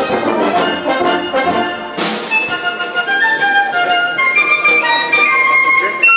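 Military band playing: full brass chords from French horns and tubas with a pulsing beat, then about two seconds in the texture thins and a high melody line of held notes takes over.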